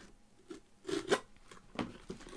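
Scissor blade slitting the packing tape along a cardboard box's seam, in a few short scraping strokes, with cardboard rubbing as the box is handled.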